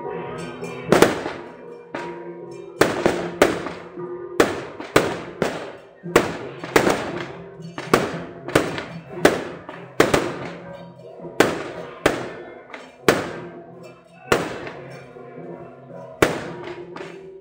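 Firecrackers going off one bang at a time, about one or two a second at uneven spacing, over music with steady held tones.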